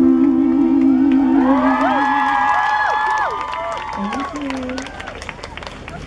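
The last sung note of a live song, held with vibrato, ends about two and a half seconds in. An audience cheers and screams over it in many high voices, then claps as the cheering dies down.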